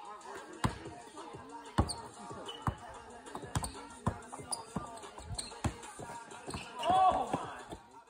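Basketballs bouncing irregularly on a wooden deck-board court, sharp thuds every half-second to second, mixed with children's voices talking and calling out. The loudest call comes about seven seconds in.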